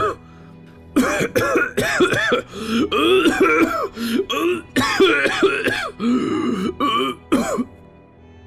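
A man acting out a long coughing fit: a rapid string of coughs and throat-clearing sounds that begins about a second in and goes on almost to the end, over steady background music.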